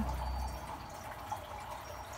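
A few faint drips of water, from hanging flower planters that have just been watered, over a quiet background. A low rumble fades away in the first half second.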